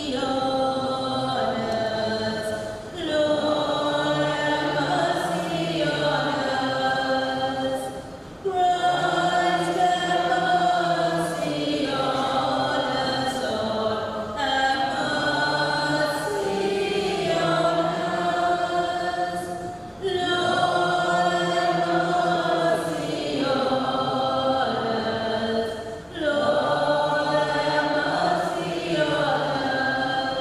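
Church congregation singing a slow hymn, led by a woman's voice through the church microphone. The singing moves in sustained phrases of about six seconds, with brief breaks for breath between them.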